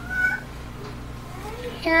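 A short high-pitched tone, about a third of a second long and rising slightly, near the start, over a low steady room hum.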